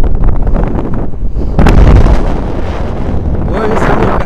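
Wind rushing over the jumper's camera microphone as he swings on the jump rope. It swells to its loudest about two seconds in and then eases off.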